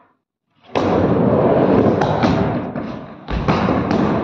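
Skateboard wheels rolling on a wooden mini ramp, starting about a second in, with a couple of sharp clicks and a heavy thump near the end.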